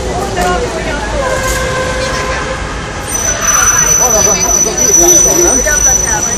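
Crowd of protesters talking and calling out over a low traffic rumble; a held note sounds in the first half, and about halfway in a steady high-pitched tone starts.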